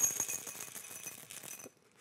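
Whole coffee beans poured from a stainless steel canister into a small ceramic ramekin, a rapid rattle of many small clicks that is loudest at first and thins out. It cuts off suddenly near the end.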